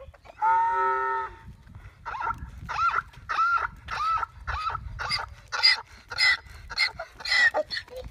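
Donkey braying: one held note, then a quick run of about ten short rising-and-falling hee-haw calls, pitched higher toward the end.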